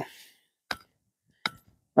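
Two short, sharp chops of an ika hoe's steel blade into the soil, a little under a second apart, cutting young bamboo shoots off below the surface.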